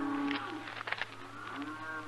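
Cattle mooing in the loading pens: two long, drawn-out moos, the first ending about half a second in and the second rising and then holding through the last part.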